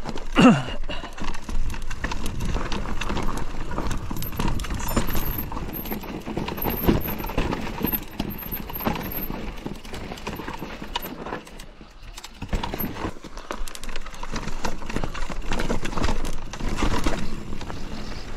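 Mountain bike rolling down a rough, rocky dirt trail: the tyres crunch steadily over gravel and stones, and the bike knocks and rattles in quick, uneven clatters as it drops over rocks. The sound eases briefly about twelve seconds in.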